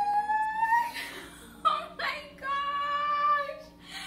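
A woman's drawn-out, high-pitched excited squeals, about three long held cries, uttered with her hands over her mouth.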